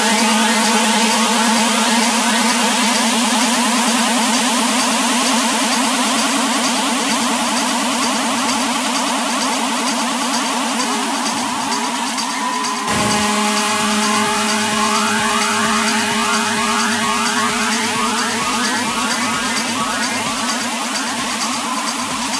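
Techno from a DJ mix: sustained, buzzing synth tones over a fast ticking hi-hat pattern, with little bass or kick drum. About 13 seconds in the track shifts abruptly as a new set of tones comes in.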